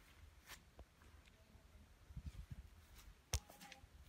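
Quiet outdoor stillness with faint footsteps: a few soft low thumps, then one sharp click about three seconds in.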